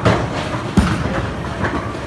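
Bowling ball crashing into the pins and the pins clattering down. The loudest, sharpest crash comes just before the middle, over the steady rumble of balls rolling on the lanes.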